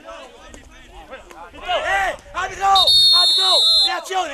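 Men's voices calling out on the pitch, then one long referee's whistle blast lasting about a second, near the end, stopping play for a foul.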